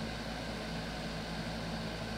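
Steady background hiss with a faint low hum and rumble, unchanging throughout.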